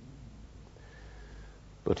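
Faint low hum and hiss of an old cassette recording during a pause between spoken phrases. A man's voice starts speaking just before the end.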